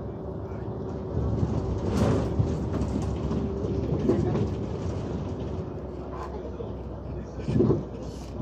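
Cabin noise of a Hyundai New Super Aerocity natural-gas city bus on the move: engine and road rumble with a steady hum, and a sharp knock about two seconds in.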